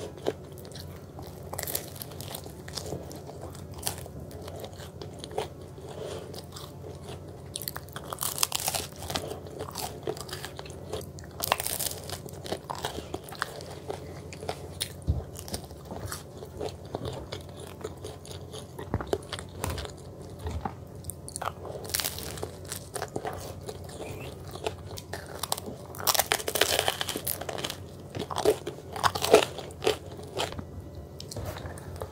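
Person eating pizza close to the microphone: crunchy bites into the crust and steady chewing with small wet mouth clicks. The loudest bites come in a cluster near the end.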